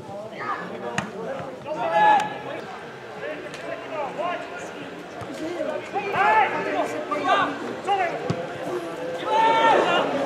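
Players calling and shouting to one another during open play on a football pitch, with sharp thuds of the ball being kicked about a second in and again after about eight seconds.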